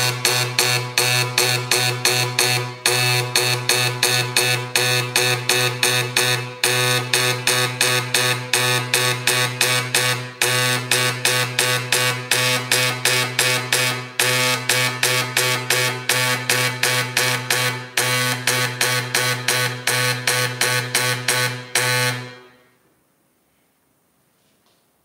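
Dot peen marking machine stamping a mark into a metal workpiece: a rapid, continuous stream of stylus strikes over a steady buzzing tone, with short breaks every few seconds, stopping about 22 seconds in.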